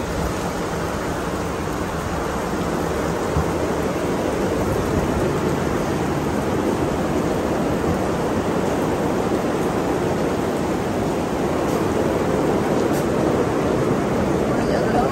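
Steady rain falling, an even rushing hiss without breaks.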